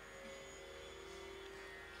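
Faint, steady tanpura drone, its strings ringing on.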